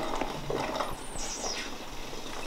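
Quiet sucking and small slurping noises through a bundle of drinking straws stuck in a drink carton.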